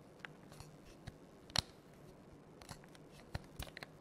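A few scattered single key clicks from the EPOMAKER Brick 87 mechanical keyboard, irregular and unhurried, with one louder clack about one and a half seconds in and a quick cluster of clicks near the end.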